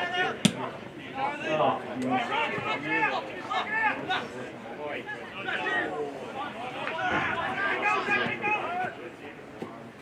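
Spectators' voices shouting and talking over one another, with one sharp knock about half a second in.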